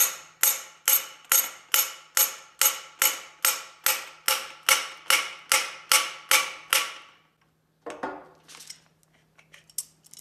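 Evenly spaced hammer taps, a little over two a second for about seven seconds, each ringing briefly off the steel mill spindle as a tapered roller bearing is driven onto it; a short clatter follows near the end.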